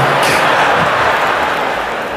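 Large audience laughing after a stand-up punchline, a dense wash of many voices that slowly dies down.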